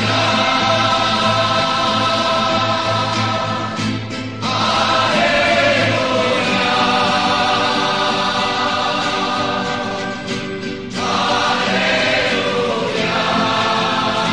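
Choir singing a Christian hymn in long held chords, with two short breaks between phrases.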